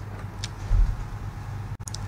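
A short pause in the talk: a low steady hum and faint background hiss on the studio microphone, with one faint click about half a second in.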